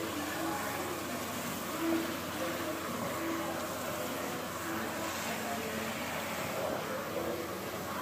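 Water from a salon shampoo-bowl sprayer running onto hair and into the basin, a steady hiss, with faint voices in the background.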